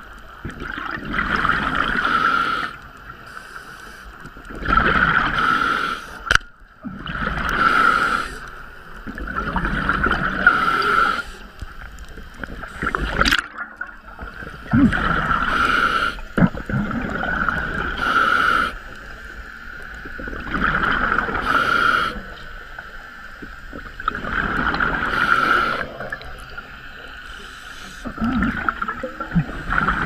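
A scuba diver breathing through a regulator underwater, heard as rushes of hiss and bubbles that come back about every three seconds in a steady breathing rhythm. A sharp click comes about halfway through.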